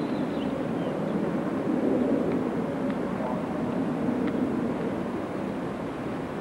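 Steady low rumbling outdoor background noise with no clear pitch or rhythm.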